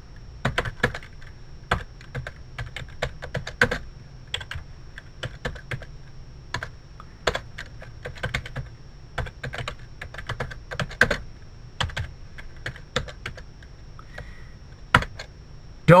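Computer keyboard being typed on in irregular runs of keystrokes, over a faint low hum and a thin steady high-pitched tone.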